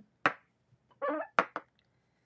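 Two sharp knocks about a second apart: a clear acrylic stamp block being lifted off and set down on the craft mat after stamping.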